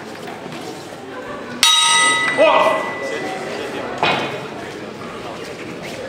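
Boxing ring bell struck once about a second and a half in, ringing for about a second to open the round, followed by a short shout and a second, shorter clang about four seconds in, over the chatter of a crowd in a large hall.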